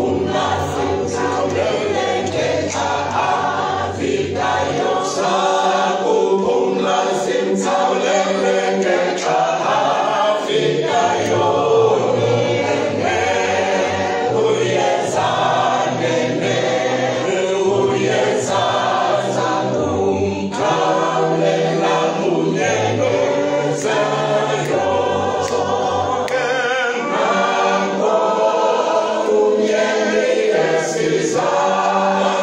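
Church congregation singing a hymn a cappella, many voices in harmony without a break.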